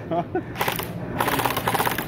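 Electric airsoft rifle firing on full automatic: a rapid, continuous rattle of gearbox clicks and shots that starts about half a second in.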